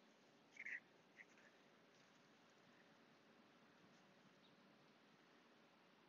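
Near silence, with a brief faint short sound about half a second in and a tinier one about a second in.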